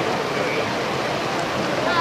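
Steady rushing noise of choppy sea water around a pack of open-water swimmers, with their splashing mixed in.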